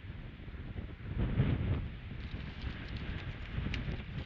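Wind buffeting an outdoor nest-camera microphone: a steady low rumble with a stronger gust about a second in. In the second half, faint scattered clicks and crackles.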